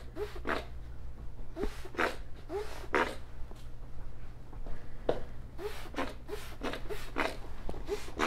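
Hand trigger spray bottle of Birex intermediate-level disinfectant spraying a fine mist in repeated short hissing squirts, about eight of them, each with a faint chirp just before it. This is the second spray, the disinfecting step, meant to wet each surface.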